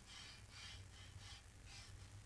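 Faint, short strokes of a calligraphy brush dry-brushing masking fluid onto cold-pressed watercolour paper, about two or three strokes a second.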